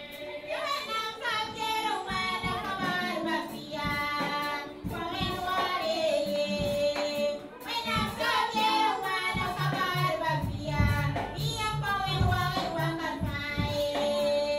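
Women's choir singing a hymn in several voices, gliding between long held notes. About two-thirds of the way in, a low beat pulsing about twice a second joins the singing.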